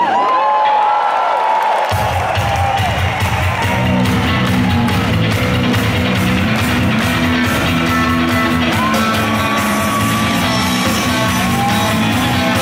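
Live rock band starting a song in an arena: electric guitar at first, with bass and drums coming in about two seconds in. The crowd cheers and whistles over the opening.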